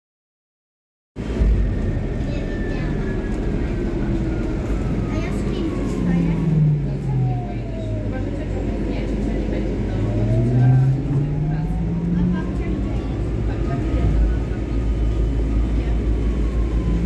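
City bus interior while the bus is moving, starting about a second in: a steady low rumble with a drivetrain whine that falls in pitch as the bus slows, then rises again as it speeds up.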